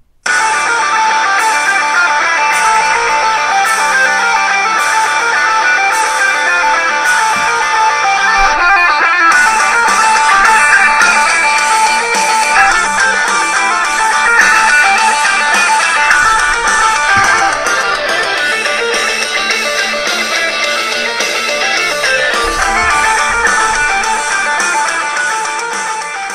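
Guitar-driven rock music played loudly through the built-in stereo speakers of a late-2013 MacBook Pro 13-inch Retina laptop as a speaker sound test. It starts abruptly and plays without a break.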